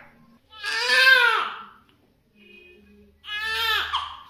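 Newborn baby crying: two cries, the first and louder one about half a second in, the second near the end.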